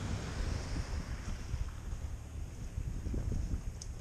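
Wind buffeting a helmet-mounted camera microphone, heard as a low, uneven rumble.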